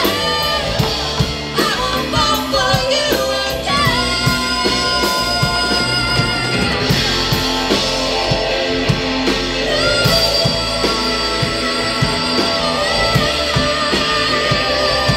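Live rock band playing: a woman singing lead over electric guitars and a drum kit, with long held notes after about four seconds.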